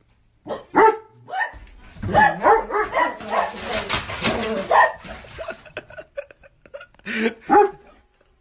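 A large dog barking at a front door, in a short burst, then a long run of barks, then two more barks near the end, as it goes for the mail coming through the door's mail slot.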